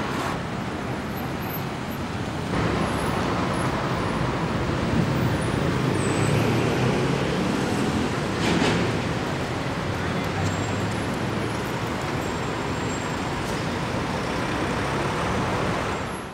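Busy city street ambience: steady traffic noise, stepping up a little a couple of seconds in, with a short louder rush of noise about halfway through.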